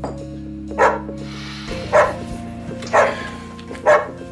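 A dog barking four times, about once a second, over background music.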